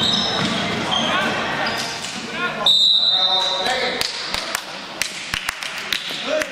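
A referee's whistle blown once for about a second, partway through. Before it, sneakers squeak on the gym floor; after it come sharp knocks of a basketball bouncing, over the chatter of voices in the gym.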